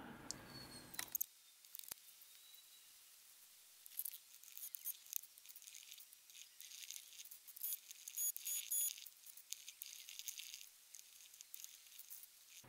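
Faint, intermittent crackling and rustling of gloved hands packing chopped carbon fibre strands into a mould.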